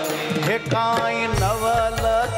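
A man singing a Gujarati devotional kirtan in a gliding, ornamented melody, with light percussion accompaniment.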